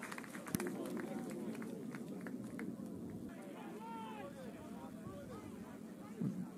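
Faint rugby field ambience: distant players' shouts and calls over a quiet outdoor background, with a few light knocks in the first half.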